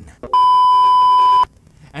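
Censor bleep: a single steady, high beep tone about a second long that starts and cuts off abruptly, laid over a word in mid-sentence.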